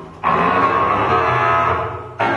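Bass clarinet playing a long held note after a brief pause at the start, the note tapering off near the end.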